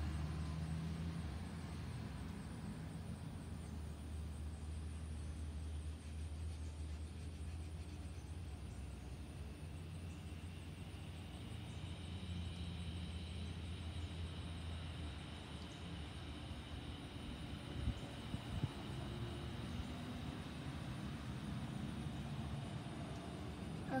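Steady low rumble of a vehicle engine that fades out about two-thirds of the way through, with a faint high steady whine joining about halfway.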